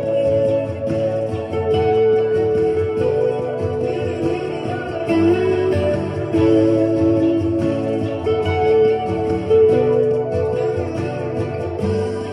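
Electric guitar playing a melodic chorus hook of long held notes, overdubbed over the song's unfinished backing track.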